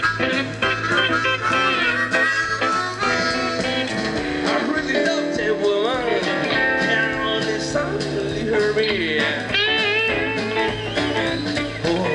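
Live blues-rock band playing an instrumental passage between vocal lines: electric guitars over electric bass and drums, with bent, wavering lead notes.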